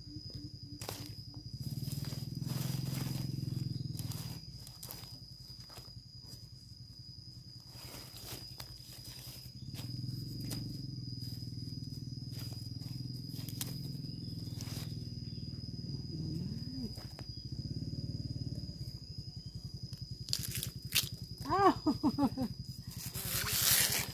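A kitchen knife cutting into fresh bamboo shoots and stripping off the husk sheaths: a series of sharp cuts and crisp crackles of the husks, over a thin steady high tone. A short voice sound comes near the end.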